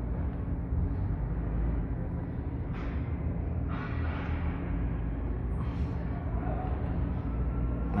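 Steady low machine hum, with a few faint brief rasps as a pinch-off tool's screw is hand-tightened on a copper refrigerant line.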